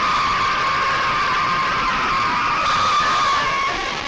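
A classroom of primary-school children cheering and screaming together in one sustained, very loud shout, heard through a video-call link.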